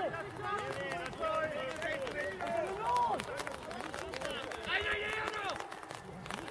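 Several voices shouting and calling to one another on a football pitch, overlapping, with no clear words.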